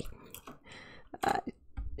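A few computer keyboard key clicks as a score is typed, with one short throaty "uh" from a woman's voice about a second in.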